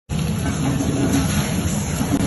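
Tandoori chicken and onions sizzling on a hot cast-iron sizzler plate: a steady hiss and crackle, with voices murmuring under it.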